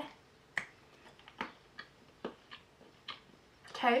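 A person chewing a bite of soft chocolate from an advent calendar, with about seven sharp wet mouth clicks at irregular intervals. The chocolate is like a Malteser without the crunchy centre, so there is no crunch.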